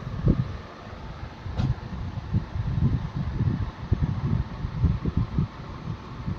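Handling noise on a camera microphone: irregular low bumps and rubbing as the camera is moved about close over the cloth.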